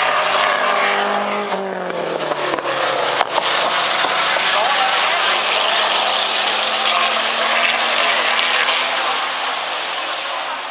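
Historic racing car engine going past with its pitch falling over the first couple of seconds, then engines of cars running on the circuit carrying on steadily. A single sharp knock comes about three seconds in.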